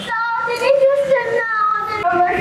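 A young girl speaking through tears, her high voice wavering and stretched into long drawn-out wails.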